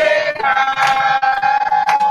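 A woman singing through a PA microphone, holding one long high note that steps up in pitch about half a second in. Two sharp hits sound over it.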